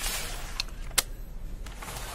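Handling noise at a desk: a soft rustle, then a sharp click about a second in, with a fainter click before it, as papers and brochures are moved about.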